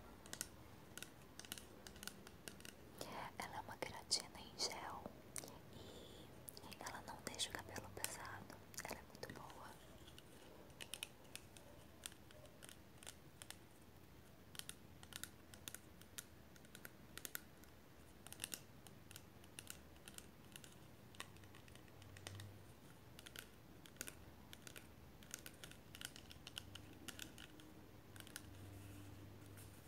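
Long fingernails tapping on a plastic keratin-product bottle: a quiet run of light, irregular clicks.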